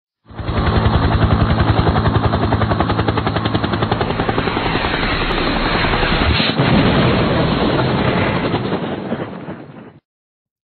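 Helicopter sound effect: fast, even rotor chop over a low drone, with a sudden loud burst about six and a half seconds in, then fading away.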